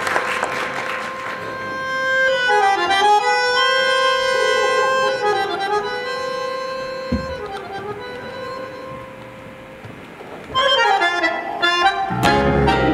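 Bandoneon playing slow tango music in long held notes that swell and fade, with a livelier new phrase starting near the end.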